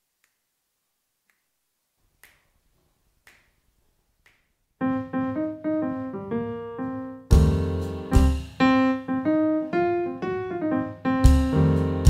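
A few faint count-in clicks about a second apart. About five seconds in, a jazz tune starts on piano and bass with the drum kit playing a jazz shuffle, with heavy drum and cymbal hits at a few points.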